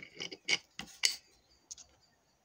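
A handful of short, sharp clicks and taps, the loudest about half a second and a second in, from brake parts and their packaging being handled on a workbench.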